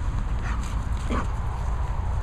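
A dog gives two short calls that fall in pitch, over a steady low rumble.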